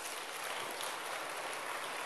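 Audience applauding: dense, steady clapping.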